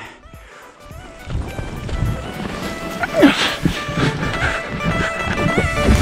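Background music over the rising rush of wind on the microphone and running footsteps as a paraglider pilot runs down the slope for a forward launch; the wind noise builds from about a second in, with a short laugh about three seconds in.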